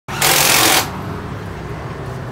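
Suzuki Xipo two-stroke motorcycle engine idling with a steady low rumble, after a short, loud burst of noise in the first second.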